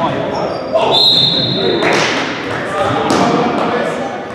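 Indoor basketball game in a gym hall: the ball bouncing on the hardwood floor and players' voices echoing, with a high squeal about a second in, typical of a sneaker on the court.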